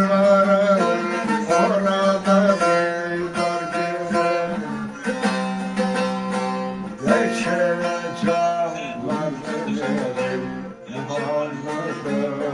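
Bağlama (Turkish long-necked saz) played solo: a fast strummed folk melody over a steady low drone from the open strings.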